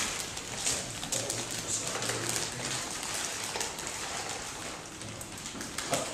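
Newspaper rustling and crackling as a rolled sheaf is handled, giving a continuous crackle of small paper clicks.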